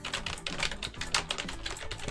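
Computer keyboard typing: a fast, continuous run of key clicks as a word is typed out.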